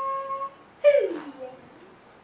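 A high voice holding one steady sung note that stops about half a second in, then a loud vocal call sliding down in pitch about a second in.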